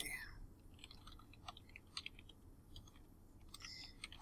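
Faint computer keyboard keystrokes and clicks, scattered and irregular, as a command is typed.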